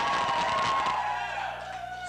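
Live audience cheering and whooping, with one long, slightly falling whoop held above the crowd noise, dying down in the second half.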